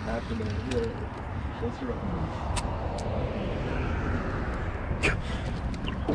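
Baitcasting reel being cranked in on a retrieve over a steady low rumble, with a few sharp clicks and faint voices in the background.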